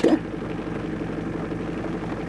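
Nissan Vanette van's engine running with a steady, even hum and a regular low pulse.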